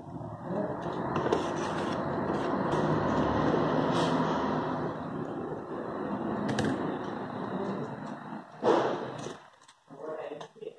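Continuous scraping and rubbing handling noise as a TV circuit board is turned over and handled on the bench, with a single sharper knock near the end.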